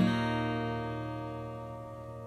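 A single strummed acoustic guitar chord ringing out and slowly fading.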